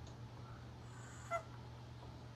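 One short, sharp call from a farmyard fowl about a second and a half in, over a faint, steady low hum.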